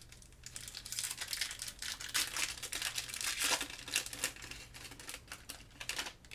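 Foil-lined wrapper of a Magic: The Gathering collector booster pack crinkling and tearing as it is ripped open by hand. The dense crackle starts about half a second in, is loudest in the middle and thins out near the end.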